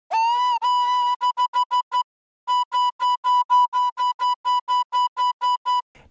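Distorted pan-flute lead synth patch in Serum, with diode distortion, a low-cut filter and a phaser, playing a single high note. It opens with a note that scoops up in pitch and holds, then repeats the same pitch in quick short staccato notes at about four to five a second, with a brief gap about two seconds in.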